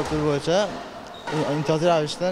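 A young man speaking in an interview, a steady run of talk, with one sharp knock at the very start.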